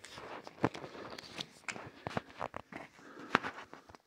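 Irregular crunching and knocking of someone moving over and among a pile of charred wooden boards and loose rock, with many sharp clicks; the loudest knock comes about three and a half seconds in.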